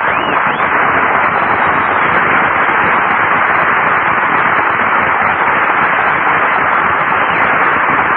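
Studio audience applauding, a dense steady clapping that starts suddenly and holds at an even level throughout.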